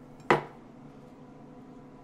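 A single sharp knock of a chef's knife blade striking a wooden cutting board as it slices through a steak, about a third of a second in, with a brief ring after it.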